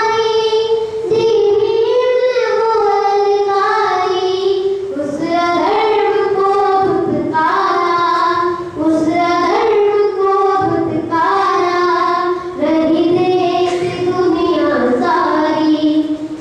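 A boy singing solo into a handheld microphone, unaccompanied, in long held notes that move from phrase to phrase with short breaths between them.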